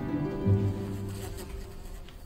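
A fly buzzing over background music of low bowed strings.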